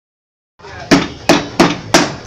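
Two wooden mallets pounding peanut brittle (Thai tup tap) on a wooden block, the men striking in turn: four sharp, even strikes about three a second, starting just under a second in.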